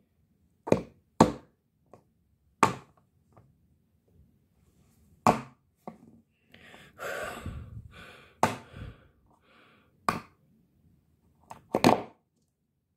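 A series of separate sharp knocks, irregularly spaced, with a quick double knock near the end. In the middle there is a breathy noise lasting about two seconds.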